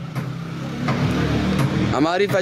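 Low rumbling noise that builds over the first second and a half, then cuts off suddenly at the end.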